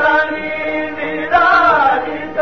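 Music: a voice singing a melody with long held, gliding notes, in an Indian devotional or chant-like style.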